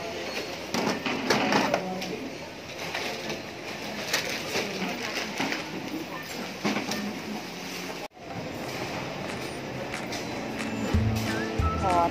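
Clatter and knocks of groceries being handled and packed at a supermarket checkout counter, over background music and shop noise. The sound drops out abruptly about eight seconds in, and music with a strong bass follows.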